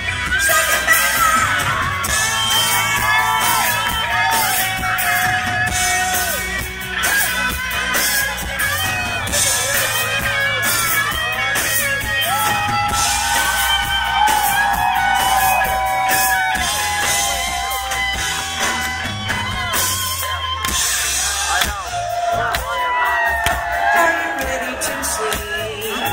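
Live rock band playing loud, with drums, bass and electric guitars, a lead melody of long held and bending notes running over the top. Occasional whoops from the crowd.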